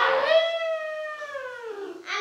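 A young girl's voice drawn out into one long, exaggerated yawn-like call, held for nearly two seconds and sliding slowly down in pitch.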